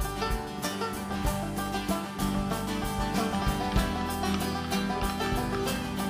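Live country-bluegrass band in an instrumental break: banjo and resonator guitar picking over a steady drum beat.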